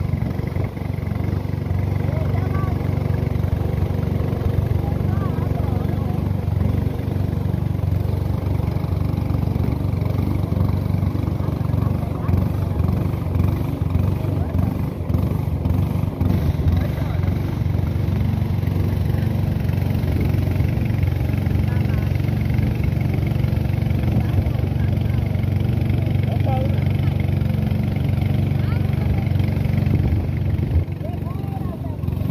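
Small riverboat's motor running steadily at cruising speed, a constant low drone with no change in pitch.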